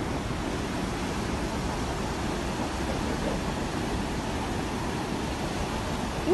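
Ocean surf: a steady, even rush of waves breaking on a sandy beach.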